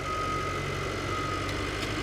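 Diesel engine of a small Caterpillar crawler dozer running steadily while it pushes dirt. A thin, steady high whine sits over the engine.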